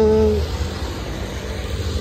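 A man's drawn-out word trails off, then a steady low rumble of outdoor background noise with no distinct event.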